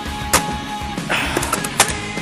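Rock music with a steady beat, with two sharp cracks about a second and a half apart and a short hiss between them.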